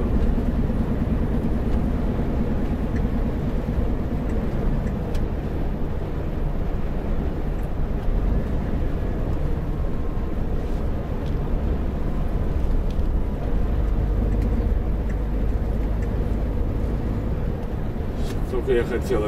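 Steady drone of a semi-truck's diesel engine with tyre and road rumble, heard inside the cab while cruising at road speed.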